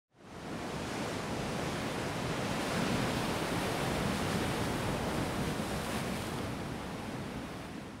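Steady rushing noise of wind-and-surf ambience, fading in over the first half second and easing slightly toward the end.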